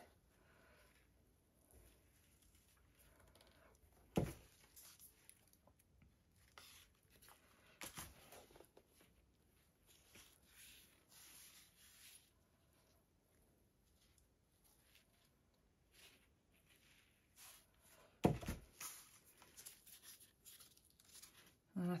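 Faint handling sounds of a round canvas board on a paper-covered table: light rustles, a sharp knock about four seconds in, and a heavier thump near the end as the board is set back down.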